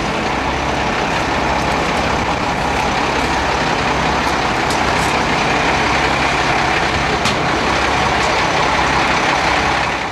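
A flatbed truck's engine running steadily close by, a continuous loud drone that swells slightly toward the end.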